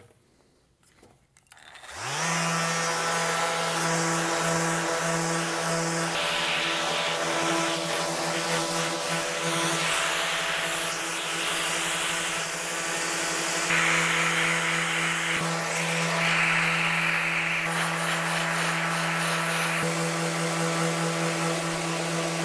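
Electric orbital sander with 100-grit paper starting up about two seconds in with a short rising whine, then running steadily with a hum. It is sanding the old finish off a bow's fiberglass limb, and a louder, grittier scrape comes and goes in stretches as the pad works the surface.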